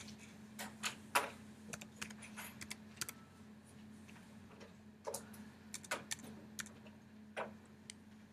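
Keystrokes on a computer keyboard: irregular taps in small clusters as numbers are deleted and typed, over a steady low hum.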